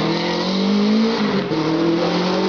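Subaru Enterprise hillclimb race car's engine pulling hard out of a tight corner, its pitch rising, then dropping about one and a half seconds in at an upshift before climbing again.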